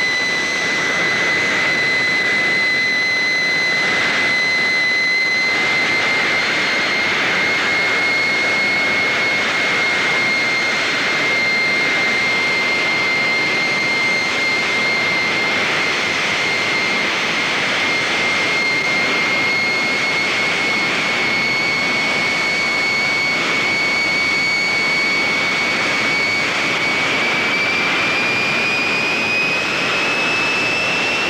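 Jet dragster turbine engines running on the start line: a steady, loud turbine whine over a constant rush of exhaust noise. The whine rises slightly in pitch near the end as the engine spools up before staging.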